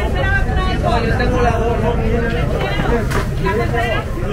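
Voices of people talking close by among the market stalls, over a steady low rumble.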